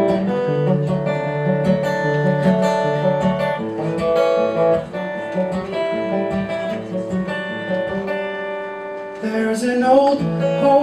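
Acoustic guitar playing a song's intro, picked notes ringing over each other in a steady rhythm. A singing voice comes in near the end.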